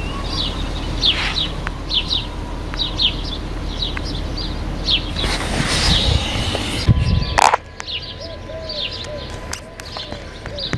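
A small bird chirping repeatedly outdoors in short, high, falling chirps about two a second, over a low rumble that ends with a single sharp knock about seven and a half seconds in.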